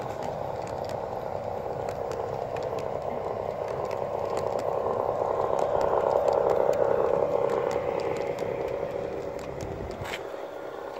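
G-scale model train coaches rolling past on garden-railway track behind an LGB E10 electric locomotive: a steady running noise with scattered light clicks, swelling to its loudest about six to seven seconds in and then easing off.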